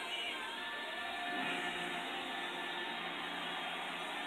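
Music with long held notes playing from a television in the room, fairly quiet against the room's hiss.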